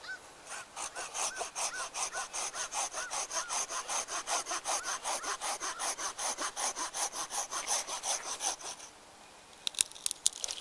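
A hand pruning saw cutting through a live maple branch with quick, even strokes, about five a second, stopping about nine seconds in. A few sharp cracks follow near the end.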